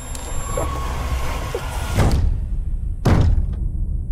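Two heavy booming thuds about a second apart, in trailer sound design, over a low rumbling drone with a faint high tone near the start.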